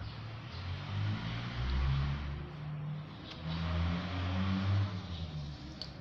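A motor vehicle's engine running, its low pitch rising and falling as it revs, over a steady hiss; it swells twice, around two seconds in and again around four to five seconds in.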